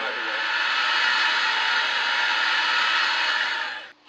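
A loud, steady rushing noise played through a television speaker, cutting off abruptly just before the end.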